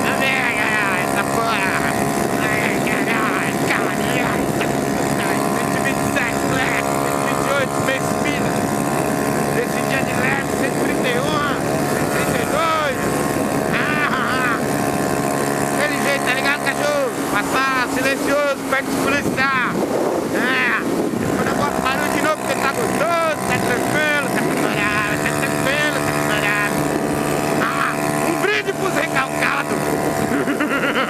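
Yamaha Factor 150 motorcycle's single-cylinder engine running at high, steady revs as the bike holds about 127 km/h near its top speed.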